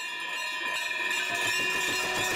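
Brass aarti hand bells ringing continuously, several overlapping steady tones. A drum beating rapidly joins in about a second in.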